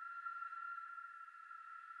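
A faint, steady high-pitched electronic tone, a drone laid under the title card, slowly fading away.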